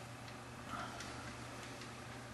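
Several faint, light clicks at irregular spacing over a steady low hum.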